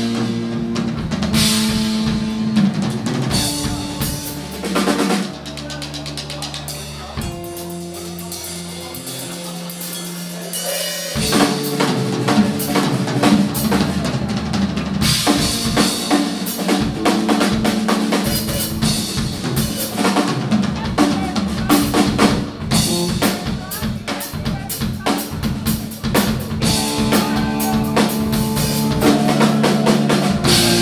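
Live blues-rock band playing an instrumental passage, with the drum kit most prominent over electric guitar and bass. About a third of the way in the band drops to a sparser stretch of long held low notes, then the full drumming comes back in.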